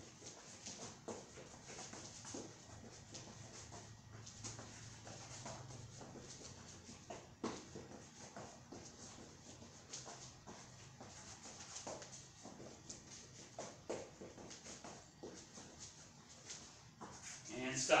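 Quick, light footsteps of athletic shoes shuffling side to side on a foam floor mat, with soft scuffs and taps coming several times a second.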